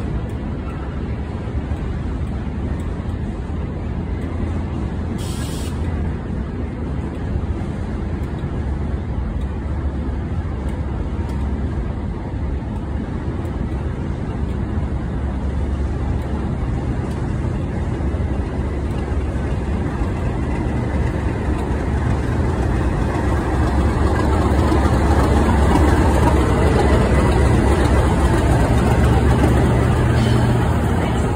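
Class 37 diesel locomotive 37422, with its English Electric V12 engine, running steadily as it approaches along the platform, growing louder in the last several seconds as it comes alongside.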